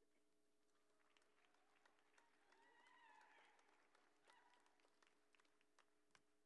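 Near silence: a faint steady hum with scattered faint clicks, and a faint, wavering distant call about three seconds in.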